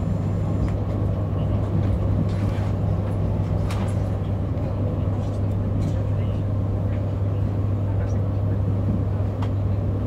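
Steady low hum and running rumble inside a moving electric commuter train, with occasional faint clicks from the track.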